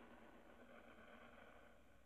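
Near silence: faint hiss of the air-to-ground communications link in the pause between a question and its answer.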